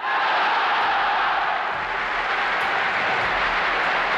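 A large crowd roaring in unison, a mass shout of "Yes!" merging into sustained cheering, from old archival film sound. It starts abruptly and holds steady and loud throughout.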